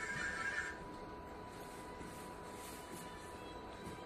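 An instrument sound played back by an interactive projection music wall, which cuts off less than a second in. After it only faint room noise remains, with a thin steady whine.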